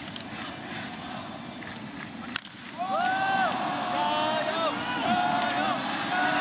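Stadium crowd murmur, then the sharp crack of a baseball bat meeting the ball about two and a half seconds in, as a fly ball is hit to deep center. The crowd swells into sustained cheering as the ball carries.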